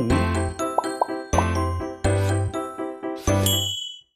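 Program intro jingle: upbeat music with bell-like chimes over a repeating bass note, with a few quick rising whistle slides about a second in. It stops abruptly just before the end.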